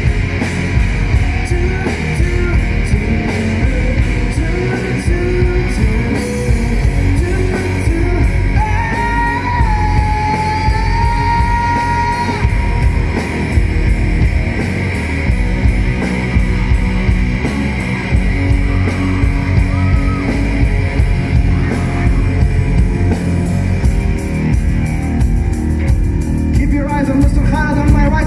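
Loud rock music with electric guitar and a singing voice, a long held note about a third of the way through.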